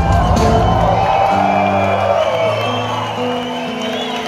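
Amplified live band at a rock concert closing out a song: the heavy low end stops about a second in and a few held notes ring on, while the audience cheers and whoops.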